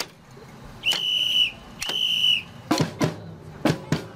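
A band leader's whistle blown in two long, steady blasts, the signal for a marching band to start. Then come a few sharp percussive clicks from the drum line.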